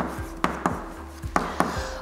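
Chalk tapping and scraping on a chalkboard as an equation is written: a run of sharp clicks, with a short gap near the middle.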